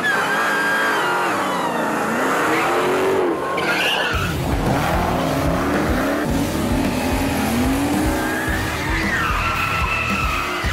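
High-powered V8 muscle cars doing burnouts and slides: tyres squealing in gliding chirps over revving engines. A heavy music beat joins about four seconds in.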